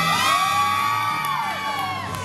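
Long high-pitched whooping voices rise and hold over the performance music, then fall away about a second and a half in, while the bass of the track drops out.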